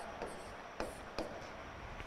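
A pen writing on an interactive display screen: faint scratching with three light taps on the screen.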